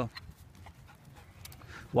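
A dog panting faintly, with a few soft clicks.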